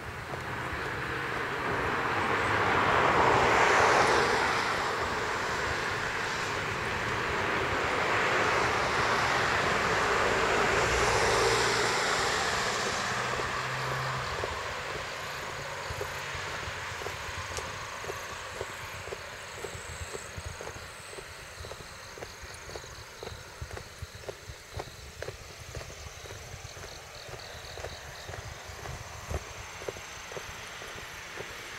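A passing vehicle: a rushing noise that swells over the first few seconds, swells again about ten seconds in, then fades away by about sixteen seconds in.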